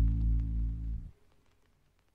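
Slowed, bass-boosted song ending: a held, bass-heavy chord stops suddenly about a second in, leaving near silence.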